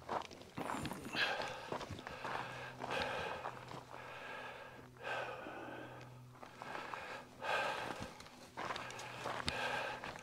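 A person breathing hard close to the microphone, a noisy breath every second or two, while walking over loose rock and gravel with small scuffs and clicks of footsteps.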